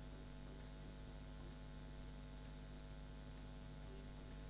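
Faint, steady electrical hum with a light hiss underneath: mains hum in the recording chain, with nothing else happening.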